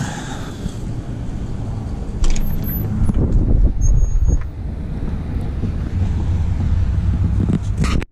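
Wind buffeting the microphone outdoors: an uneven low rumble that swells in gusts about two seconds in and again near six seconds.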